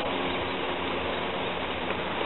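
Steady rushing background noise of an outdoor street scene, with no single clear source.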